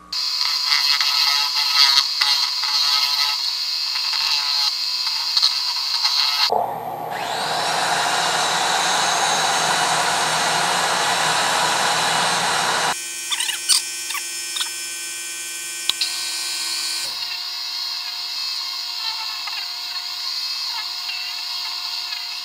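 Powermatic 3520B wood lathe running while the spinning resin-and-wood piece is smoothed, a steady hiss of abrasive or tool on the work. The sound changes abruptly twice, and about six seconds in a motor whine rises as it spins up.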